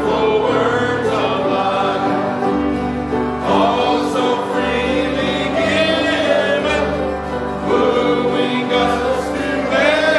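Gospel hymn sung by a church congregation, with a man's voice leading. Instrumental accompaniment holds low bass notes that change every second or two.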